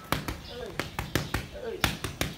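Boxing gloves smacking into padded focus mitts in quick combinations, about nine sharp hits in two seconds at uneven spacing.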